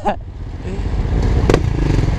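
Suzuki GSX-R600 inline-four idling with a steady low rumble in stop-start traffic, after a short laugh at the start. A single sharp click comes about a second and a half in.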